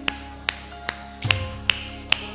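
Gospel worship band playing between sung lines, with no voice: sustained chords under a sharp snap on each beat, about two and a half a second.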